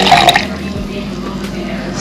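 Cold water poured from a plastic jug into rice in a plastic measuring cup, the stream tapering off to a few drips within the first half second, followed by quieter room sound with a steady low hum.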